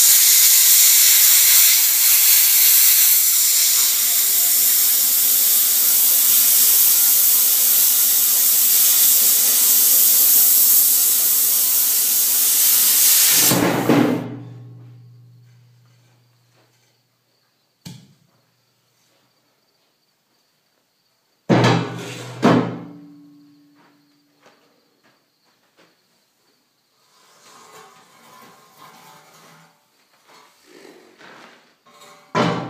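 Plasma cutter hissing steadily as it cuts through a steel frame cross member for about thirteen seconds, then a heavy metal clang with a low ring. After a quiet stretch, two sharp metal clanks about a second apart ring briefly.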